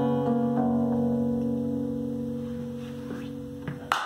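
Acoustic guitar's closing chords strummed and left to ring, dying away slowly as the song ends. A short, sudden burst of noise near the end.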